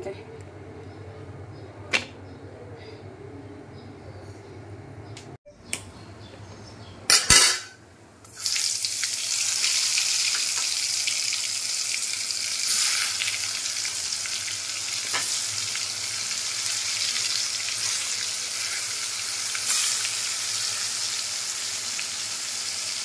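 Turmeric-coated pointed gourds frying in hot oil in an iron kadai, a steady sizzle that starts about eight seconds in. Just before it there is a short loud burst of noise.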